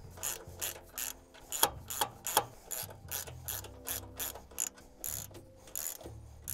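Ratchet wrench clicking as it tightens the nuts on the U-bolts holding hydraulic quick couplers to a steel bracket, with a run of sharp clicks about two to three a second.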